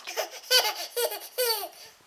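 A baby of about nine months laughing: three short laughs about half a second apart, each falling in pitch.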